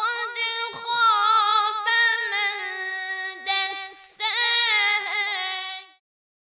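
A high solo voice singing unaccompanied, holding long wavering notes with short breaks. There is a brief hiss about four seconds in, and the voice stops just before the end.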